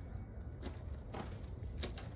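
Faint footsteps on gravel, three soft steps about half a second apart, over a steady low rumble on the phone's microphone.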